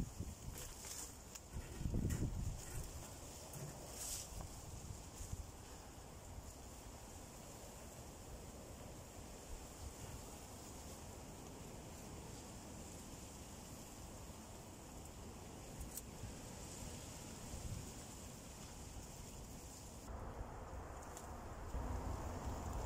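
A heavy sawn log section being tipped and shifted on soil, with dull low thuds in the first couple of seconds, then faint steady outdoor wind noise.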